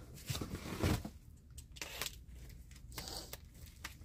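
Quiet handling noises as fabric bolts are moved and unpacked: soft rustling with a few light knocks and clicks, busiest in the first second.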